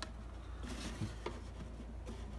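Faint handling of a cardboard watch box and its outer box: a few soft taps and a brief rustle as they are moved and set on a wooden table, over a low steady hum.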